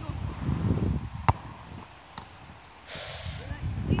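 Wind buffeting the microphone, with a sharp thud about a second in and a fainter click about a second later.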